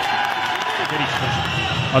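Ice hockey arena crowd noise, a steady wash of applause and cheering reacting to a fight on the ice.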